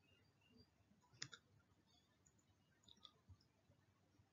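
Near silence with faint clicks from a computer as a slide is edited: one sharp click about a second in, and two fainter clicks about three seconds in.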